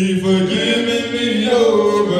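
Unaccompanied hymn singing in a church service, voices holding long notes that change pitch about half a second and a second and a half in.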